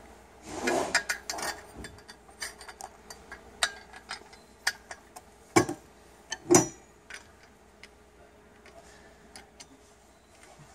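Handling noises from fitting a bolt and knob through telescoping basketball pole sections: a rustling scrape about half a second in, then scattered clicks and taps, with two louder knocks a little past the middle.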